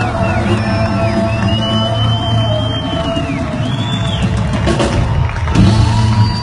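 Live band music with a strong, steady bass, picked up from among a concert audience in a large hall, with high gliding tones over it and a few sharp hits near the end.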